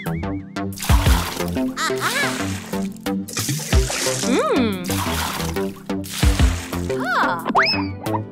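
Upbeat children's background music with cartoon sound effects over it: sliding whistle-like pitch glides, one rising and falling near the middle and another rising near the end, and a few short hits.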